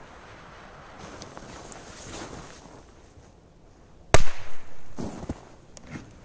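Flashbanger firecracker exploding in snow: one sharp bang about four seconds in, its sound carrying on for about a second after.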